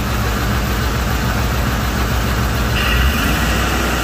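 Ford SVT Lightning's supercharged 5.4-litre V8 running and blipped by hand at the throttle linkage; the revs rise about three seconds in, and a high whine comes in with them.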